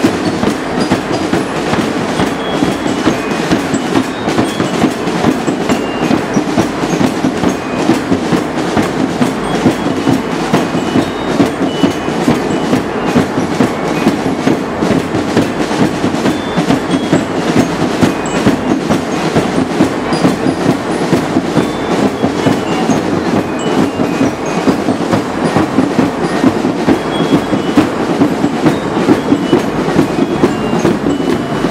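Parade percussion: drums played in a fast, loud, unbroken rattle.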